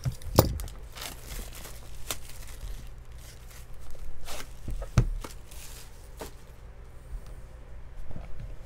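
Clear plastic shrink wrap being torn and crinkled off a sealed cardboard trading-card box, with a few sharp knocks as the box is handled on the table, the loudest about five seconds in.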